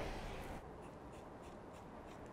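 Faint snipping and scratching of barber scissors cutting a section of wet hair held between the fingers.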